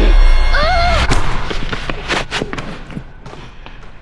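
A scuffle of bodies thudding onto a gym floor: a deep boom at the start, a short cry about half a second in, then several sharp thuds that fade over the next two seconds.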